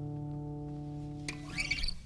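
Acoustic guitar's closing chord ringing out steadily and fading. Brief high notes are plucked near the end, and then the sound drops away.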